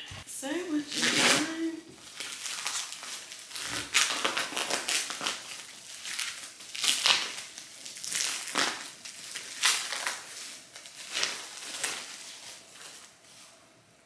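Plastic packaging crinkling and rustling as a package is unwrapped by hand, in an irregular run of crackly rustles that thin out near the end.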